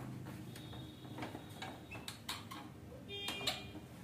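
Plastic clicks and knocks from the casing and scanner unit of a partly disassembled Canon G3020 inkjet printer being lifted and handled, with a brief high squeak and a couple of sharper clicks a little past three seconds in.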